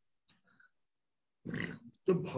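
Near silence for most of it, then a short vocal sound, like a brief syllable or grunt, from a person's voice about one and a half seconds in.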